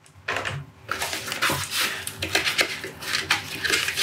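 Clear plastic packaging insert being lifted out of a cardboard box and handled: irregular rustling with many small clicks and knocks, starting a moment in.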